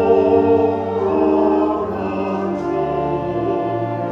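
Church organ playing a slow hymn in sustained chords that change about once a second.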